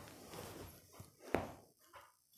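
Faint rustling and handling noise as flowers are fixed onto a decoration backdrop, with one sharp click about a second and a half in.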